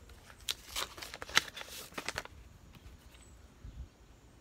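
Paper being handled as an envelope is opened and a greeting card taken out: a quick run of short rustles and crinkles over the first two seconds or so, then only faint handling.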